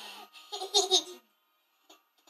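A young child laughing in a couple of short bursts during the first second or so.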